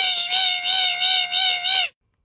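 Compact cordless 7-1/4-inch miter saw with a 60-tooth finish blade cutting quarter-round trim: a steady high-pitched whine that wavers slightly as the blade works through the wood, cutting off just before the end.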